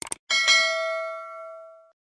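Two quick clicks, then a single bright bell ding that rings out and fades over about a second and a half: the notification-bell sound effect of a subscribe animation.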